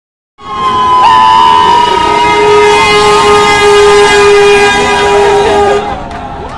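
A school bus's horn blaring one long, loud, steady chord of several pitches for about five seconds. It starts about half a second in and cuts off just before the end.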